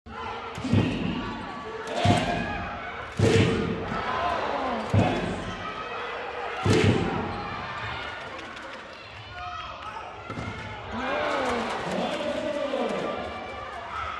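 Volleyballs being struck and bouncing in a large indoor arena: five sharp, echoing impacts over the first seven seconds, then voices calling out in the hall.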